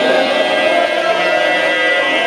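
A man's voice holding one long sung note in a zakir's melodic recitation, nearly level in pitch with a slight waver.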